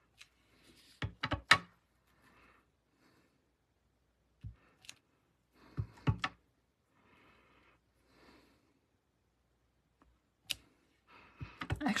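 Clear acrylic stamp block being set down and pressed onto cardstock on a glass craft mat, and tapped on an ink pad between impressions: several clusters of short clicks and knocks with soft paper rustling between them.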